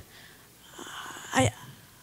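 A speaker's audible breath drawn in close to a handheld microphone, then a single short spoken word about halfway through.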